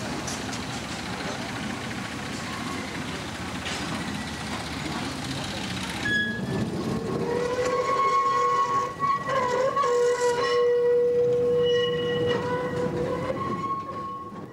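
1936 Ruston narrow-gauge diesel locomotive running as it approaches. About six seconds in, a steady high tone with overtones starts and holds for several seconds, wavering briefly partway through.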